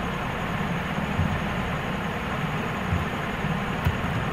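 Steady background noise with a low rumble, and a faint click near the end.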